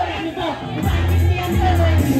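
Live music with a heavy bass line from a keyboard, and a crowd singing and shouting along over it.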